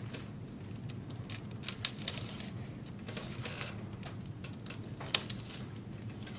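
Irregular light clicks and taps of drapery pins and rod carriers being hooked together and handled, the loudest click about five seconds in.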